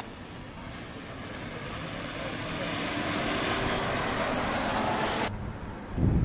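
Mercedes-Benz eCitaro battery-electric city bus driving toward the microphone: a steady rush of tyre and road noise that grows louder over about five seconds, then cuts off abruptly to a quieter outdoor background near the end.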